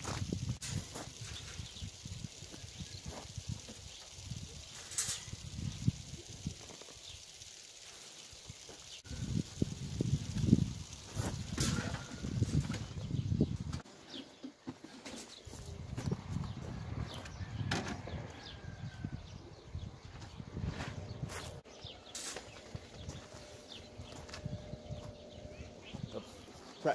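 Scattered knocks, clicks and rattles of a wooden hide box being handled and pulled out of a wire-mesh cage, over an irregular low rumble.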